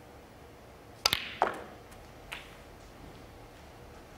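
Snooker cue striking the cue ball about a second in, followed shortly by another sharp click of ball on ball. A fainter knock comes just after two seconds.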